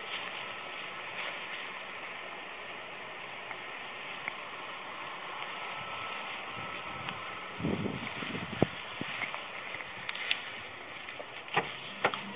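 Steady background hiss and rumble picked up by a body-worn camera, with rustling and a few sharp knocks, the loudest about eight and a half seconds in.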